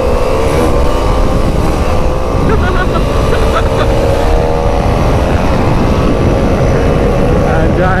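Motorcycle engine running hard at speed, holding a high, steady note that climbs slightly, with heavy wind rumble on the microphone.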